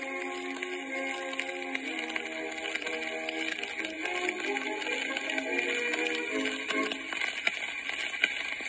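Instrumental close of an early acoustic-era gramophone recording: the band accompaniment plays out after the vocal, thin with no low end over a steady hiss, and stops about seven seconds in.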